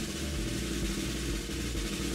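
A drum roll: a steady, fast roll that runs unbroken for about two seconds.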